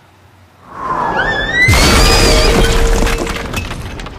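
App-made falling-boulder sound effect: a rushing whoosh with gliding whistles builds for about a second, then a loud crash with a deep rumble and crackling debris as the boulder smashes the driveway, fading out near the end.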